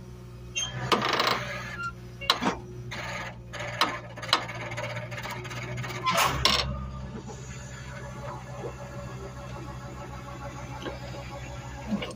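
A vehicle engine running steadily at idle. Scattered knocks and rattles come over the first seven seconds, then only the steady engine hum is left.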